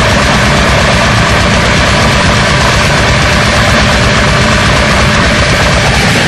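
Loud, dense extreme metal music: heavily distorted guitars and bass over very fast, relentless drumming.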